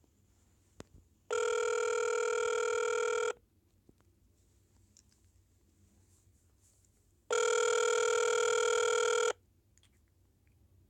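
Telephone ringback tone on an outgoing call, heard through the phone's speakerphone: two steady rings, each about two seconds long, starting about six seconds apart, while the call waits to be answered.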